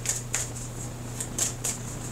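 A tarot deck being shuffled by hand: a string of short, crisp card flicks, about six in two seconds, over a steady low hum.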